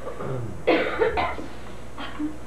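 A person coughing twice, about half a second apart, a little past the middle.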